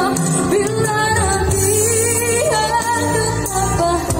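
A female vocalist singing long held notes of a pop ballad through a microphone and PA, over a live band with bass guitar and keyboard.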